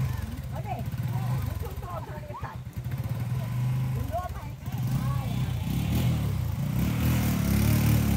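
Small motorcycle engines running close by, getting louder in the second half as the bikes pull off. Voices chatter faintly over them.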